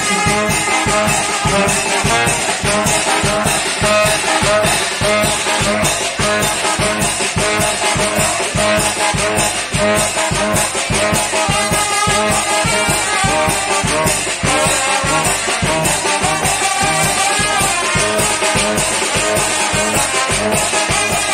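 Loud dance music with brass instruments over a steady, even beat, played for the turkey dance.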